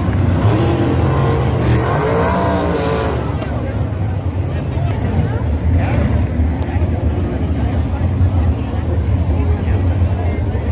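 Sprint car V8 engines running around a dirt oval, a steady drone, with one car's engine note rising and falling as it goes by in the first few seconds.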